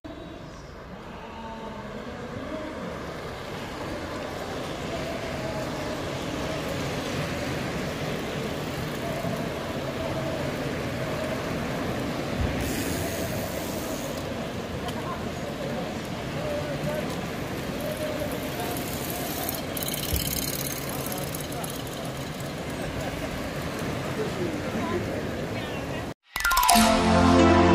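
A large bunch of bicycles riding past on a brick-paved street, with tyre and drivetrain noise mixed with the chatter of riders and onlookers. The noise swells over the first few seconds as the riders come closer and then holds steady.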